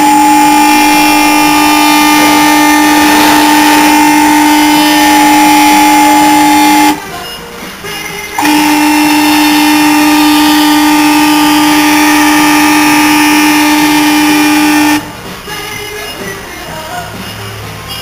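Three-phase electric motor and gearbox of a tyre-changer turntable running with a loud, steady whine of two held tones. It runs for about seven seconds, stops briefly, then runs again for about six seconds.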